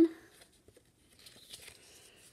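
Faint rustle of paper index cards being handled and flipped over, starting a little past a second in.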